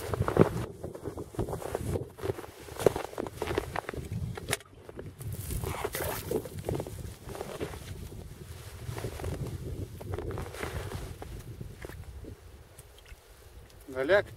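Footsteps of rubber boots in snow on river ice: uneven scuffs and crunches, growing quieter near the end.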